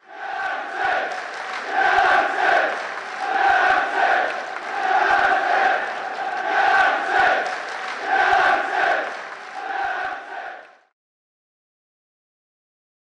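Large stadium crowd chanting in unison, the chant swelling and falling in a steady rhythm every second or two, then cutting off suddenly near the end.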